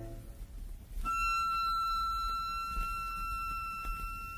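Button accordion: a full chord dies away at the start, then from about a second in a single high note is held steady and quiet.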